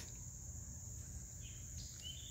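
Insects, likely crickets, giving a steady high-pitched trill, with a low outdoor rumble beneath.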